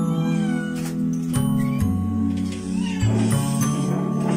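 Chow chow puppy whining in short rising-and-falling whimpers, three times, over background music with a steady bass line.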